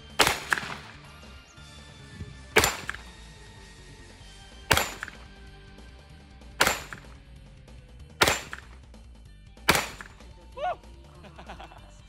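Six single 9×19 mm pistol shots from a Glock fitted in a CAA MCK carbine conversion kit. They are fired one at a time at a slow, even pace, about one every two seconds, each a sharp crack with a short echo.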